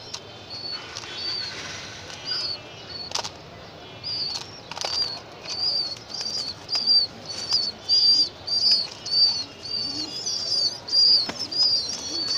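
A bird's short high chirps repeated about twice a second, growing louder after about four seconds, with a few sharp clicks of a pigeon's beak pecking grain in a plastic feeder.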